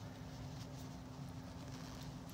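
Quiet room tone: a faint steady low hum with no distinct sound event.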